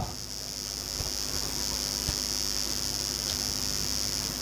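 A steady, high-pitched drone of insects, with a faint low hum beneath it and a couple of faint ticks.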